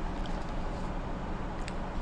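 Quiet room tone: a steady low hum with two faint short clicks, the second about a second and a half in.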